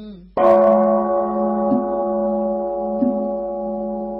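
A Buddhist temple bell is struck once, about half a second in. Its many-toned ring carries on and slowly fades. Faint regular knocks come a little over a second apart under the ringing.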